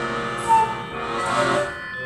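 Free improvised duo music: a bayan (button accordion) holds sustained chords while a bamboo flute plays over it, with one short, loud high note about a quarter of the way in.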